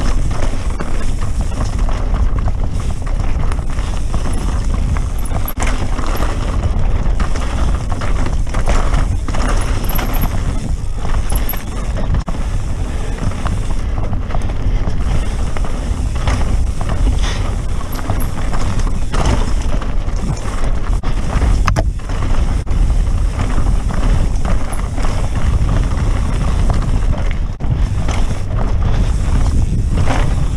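Santa Cruz Megatower mountain bike ridden fast down a dirt and gravel singletrack: tyres rolling over the ground and the bike rattling and knocking over bumps, under steady wind rush on the microphone.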